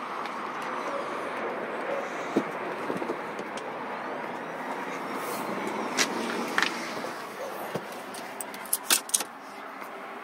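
Steady outdoor traffic noise around a parked SUV, then sharp clicks and knocks from about six seconds in, bunched together near the end, as the car door is opened and someone climbs in.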